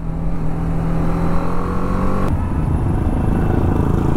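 BMW G 310 R's single-cylinder engine on its stock exhaust, heard from the saddle at riding speed. Its note climbs steadily for about two seconds, then breaks off sharply, leaving a lower rumble of engine and wind.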